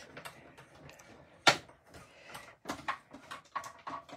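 Light plastic knocks and clicks as a manual die-cutting machine and its cutting plates are handled and set in place on a desk. One sharper knock comes about one and a half seconds in, then a run of smaller clicks near the end.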